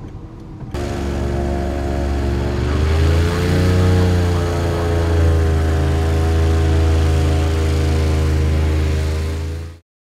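Airboat's engine and propeller running hard: a loud, steady drone that starts suddenly under a second in, rises and falls slightly in pitch around three to four seconds in, and cuts off abruptly near the end.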